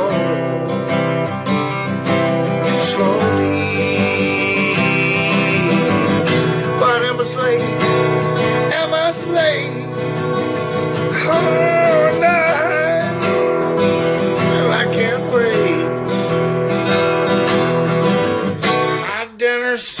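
A steel-string acoustic guitar is strummed steadily, with a man singing over it in places. The playing breaks off briefly near the end.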